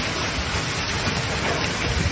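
Heavy rain and hail pouring down in a severe thunderstorm: a steady, loud hiss with an uneven low rumble underneath.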